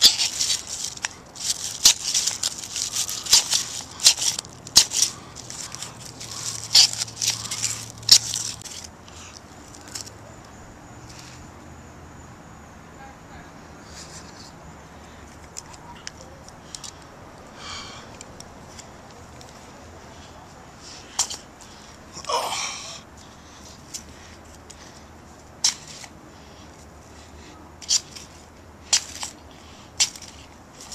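Blast Match ferrocerium-rod fire starter being struck over and over, a quick run of harsh scrapes for the first several seconds, then only occasional clicks. The sparks are not catching the tinder.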